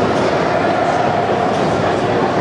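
Steady, loud rushing background noise in an ice hockey arena, with indistinct chatter mixed in.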